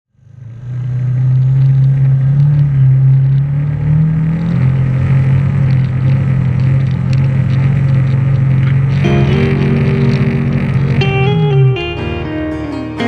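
A side-by-side UTV's engine running steadily, with a few shifts in pitch, fading in at the start and winding down near the end. About three-quarters of the way through, an electric guitar intro of a country-rock song comes in over it.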